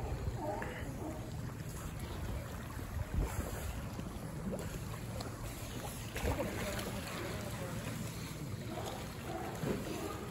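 Wind on the microphone over steady sea-water noise around a raft of California sea lions swimming at a pier's pilings, with a few faint short calls now and then.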